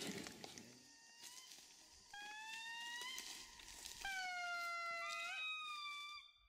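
Indri singing: long held wailing notes, each one bending upward at its end, with a second voice overlapping near the end.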